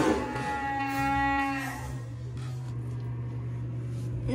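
A voice holding one long, steady-pitched drawn-out vowel for about a second and a half, then fading out, over a steady low hum.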